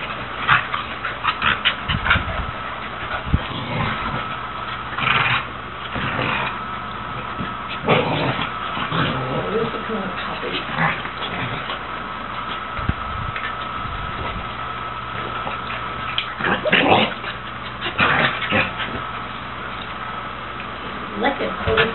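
Red heeler pup and beagle mix play-fighting: irregular bursts of scuffling and short dog vocalisations, busiest near the start and near the end.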